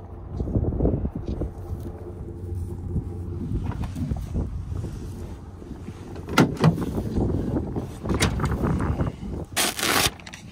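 Knocks and scrapes of a protein feed tub being handled in a pickup truck bed, the loudest near the end, over a steady low rumble.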